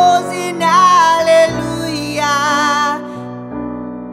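Male voice singing with piano accompaniment, ending on a held note with vibrato that stops about three seconds in, leaving the piano chords ringing.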